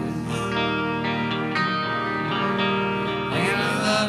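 Live rock band playing an instrumental stretch of a slow song, with guitar to the fore over long held chords.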